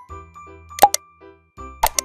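Short outro jingle music with light repeated notes, broken by sharp pops about a second in and twice near the end: click sound effects for the animated subscribe button.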